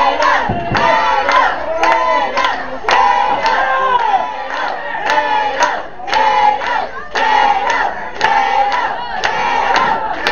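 Wrestling crowd shouting and chanting loudly in short repeated calls, many voices overlapping, with short sharp knocks between the calls.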